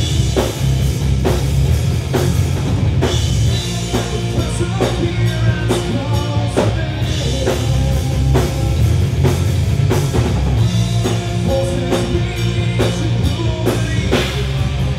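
A rock band playing live: two electric guitars, electric bass and a drum kit keeping a steady beat.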